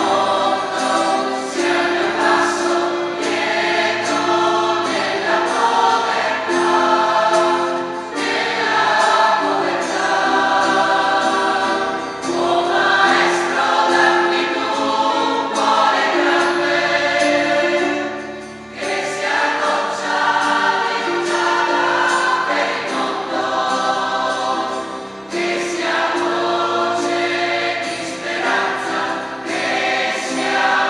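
Choir singing a hymn in phrases, accompanied by guitar and keyboard, with short breaks between phrases about two-thirds of the way through and again near the end.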